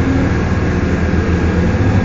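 Steady low engine drone and road noise heard from inside a moving trolley.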